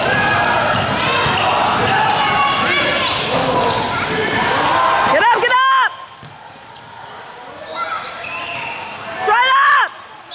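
Many overlapping voices echoing in a gymnasium. After a drop in level about halfway through, there are two short high squeaks, one then and one near the end, typical of sneakers on a hardwood court.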